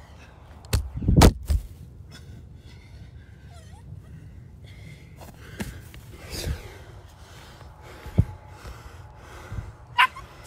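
A few thumps and knocks against a low steady background, the loudest a cluster about a second in, with single knocks later.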